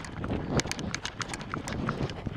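Walking footsteps scuffing and crunching on a gritty dirt running track: an uneven run of sharp clicks over softer low thuds.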